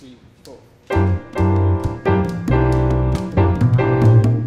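A Latin jazz quartet of vibraphone, piano, double bass and congas comes in together about a second in, opening a blues tune. Before that, a few soft, evenly spaced clicks keep the time.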